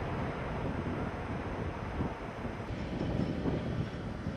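Low, steady rumble following an overburden blast at an open-cut coal mine, heard from a distance with no sharp bangs, mixed with wind on the microphone.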